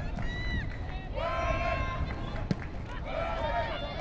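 High voices calling out in three short bursts over a steady low rumble of wind on the microphone, with one sharp knock about two and a half seconds in.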